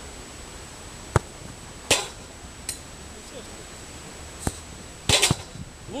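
A football being kicked and struck during shooting practice on an artificial-turf pitch: a few sharp knocks at irregular intervals, the loudest about a second in, with a louder rasping cluster a little after five seconds.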